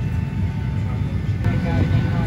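Steady low rumble of a Boeing 737-800's passenger cabin before take-off, with a voice starting again near the end.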